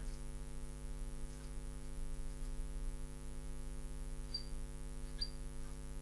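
Steady low electrical mains hum, with a couple of faint, short high squeaks about four and five seconds in from a marker drawing on the glass lightboard.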